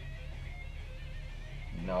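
Rock music with electric guitar playing low from a radio in the background.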